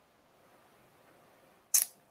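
Quiet room tone, broken near the end by one brief, sharp click with a hissy edge.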